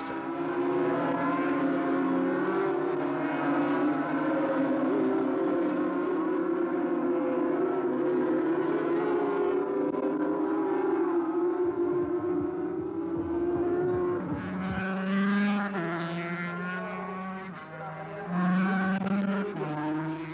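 Racing two-stroke motorcycle engines from a pack of 250 cc road-racing bikes at full throttle, a dense wavering engine noise. In the last few seconds a single bike's engine note steps up and down in pitch.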